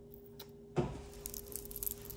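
Faint handling noise as a chain necklace strung with faux pearls is lifted from a table: a sharp knock about a second in, then light clicking and rustling, over a steady low hum.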